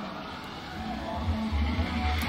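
Ski jumper's skis running down the inrun track, a low rumble that grows louder toward the end as he nears the takeoff.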